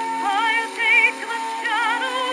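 A woman singing with wide vibrato over a sustained accompaniment on a 1913 acoustic recording. Her melody climbs to a high note about halfway through.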